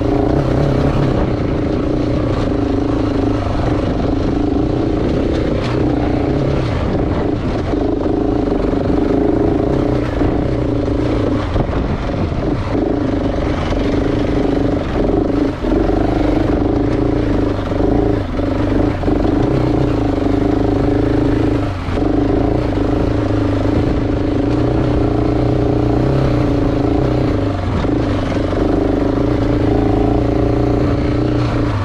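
KTM 690 Enduro R's single-cylinder four-stroke engine running at a steady, low-pitched pull. It has brief dips in level and a few knocks scattered through.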